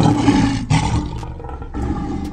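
Loud, rough roaring sound effect, coming in surges about a second long with short breaks between them.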